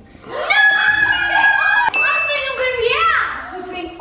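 Several children shrieking and squealing excitedly in high-pitched voices, with a single sharp click about two seconds in.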